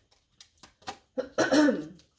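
A woman coughing or clearing her throat once, a short voiced burst starting a little past a second in. Before it, a few faint light clicks of cards being handled and laid on the table.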